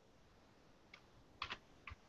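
A few faint, irregular key clicks on a computer keyboard against near-silent room tone, the loudest a quick pair about one and a half seconds in.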